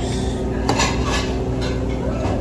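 Metal fork clinking and scraping against a ceramic plate several times, the sharpest clink about two-thirds of a second in, over a steady low hum of the room.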